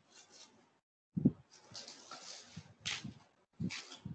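Scattered low thumps and short bursts of rustling noise picked up over an open video-call microphone, the loudest thump a little over a second in.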